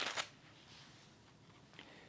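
A page of a Bible being turned: a short papery rustle right at the start, followed by quiet room tone.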